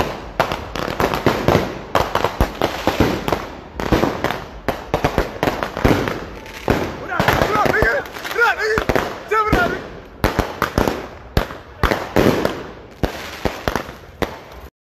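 Firecrackers and ground fireworks going off: a rapid, irregular string of sharp bangs.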